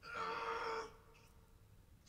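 A person's single strained shout from the episode's soundtrack, held at one pitch for under a second and cutting off, followed by quiet.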